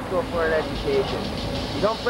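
A man talking, with a car engine idling as a steady low rumble underneath.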